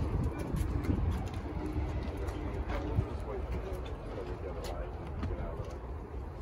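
Steady low rumble of street traffic and wind on the microphone, with faint, indistinct voices.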